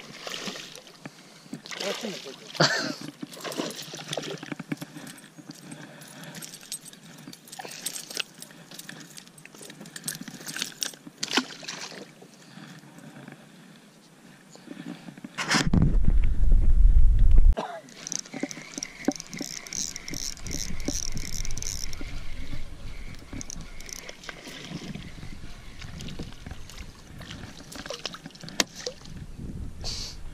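Spinning reel being cast and cranked in, with scattered clicks from handling the rod and reel, and a rapid, evenly ticking whir for a few seconds after the middle as line is wound in. Just before the whir comes a loud low rumble about two seconds long.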